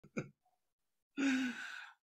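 A man's breathy sigh, under a second long, beginning a little past halfway, after a brief voiced sound near the start.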